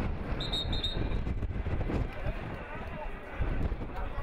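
Referee's whistle: two short, shrill blasts about half a second in, over a steady rumble of wind on the microphone and faint shouting from the pitch.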